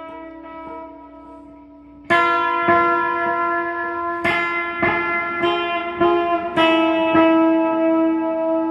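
Guitar played as music: a chord ringing out and fading, then about two seconds in a run of loud, sharply struck chords about every half second, each ringing on into the next.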